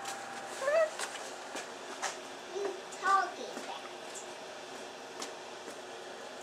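A few brief high-pitched vocal sounds, a second or two apart, over faint light ticks and taps.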